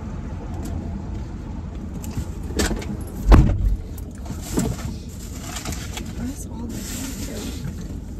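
A passenger getting into the front seat of a parked car: rustling and thumps, the loudest a heavy thump a little over three seconds in as she drops into the seat.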